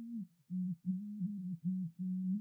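A sung lead vocal soloed through a narrow FabFilter Pro-Q 3 EQ band, leaving only a low hum-like tone that comes and goes with the sung notes, in short notes with brief gaps. This is the boomy low end of the vocal that is being cut.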